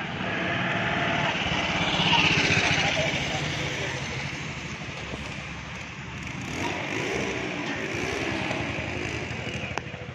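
A vehicle engine running steadily close by, with a person's voice speaking over it.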